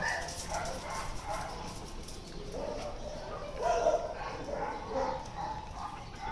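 Faint barking from dogs: a few short, scattered barks, the loudest about two thirds of the way in.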